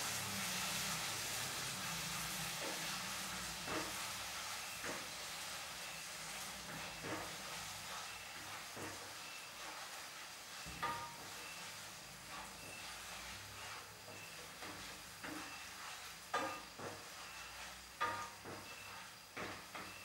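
Food sizzling in a frying pan, the hiss slowly dying down, while a wooden spatula stirs it and knocks and scrapes against the pan now and then.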